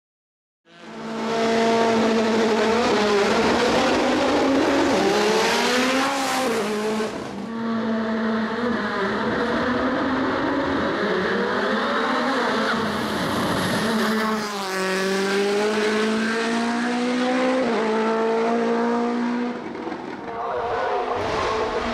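Mitsubishi Lancer Evo IX hill-climb car's turbocharged four-cylinder engine at full throttle, starting about a second in. The revs climb and fall several times as it shifts up and down through the gears while racing up the hill.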